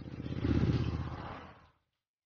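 Motor scooter passing by: its engine swells to a peak about half a second in, then fades away and stops just before the end.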